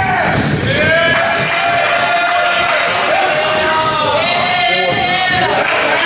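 Basketball being dribbled on a hardwood gym floor, with sneakers squeaking in long overlapping squeals as players run the court, and players' voices.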